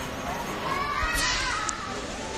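Background chatter of people in a large covered space, with a high-pitched voice calling out about a second in.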